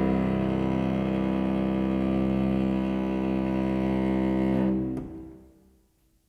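Cello holding a long final note in a cello-and-piano piece, steady and rich in overtones. It is released about five seconds in and fades away to silence.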